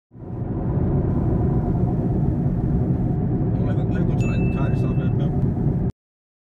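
Steady low road rumble of a moving car, heard from inside the cabin, with faint voices in the middle. It fades in at the start and cuts off abruptly just before the end.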